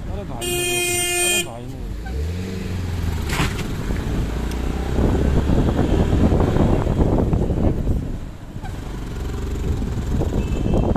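A vehicle horn sounds one steady blast, about a second long, near the start, over the continuous engine and road noise of vehicles moving along a road. Shortly after the horn an engine's pitch rises briefly.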